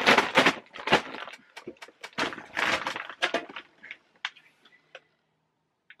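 A carrier bag rustling and crinkling as it is grabbed and handled, dense for the first three seconds or so, then a few light clicks before it goes still.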